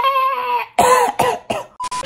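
A man's drawn-out vocal shout, held for well over half a second, then several short, harsh vocal bursts like coughing.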